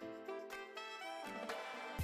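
Instrumental background music, a melodic line of sustained tones without drums.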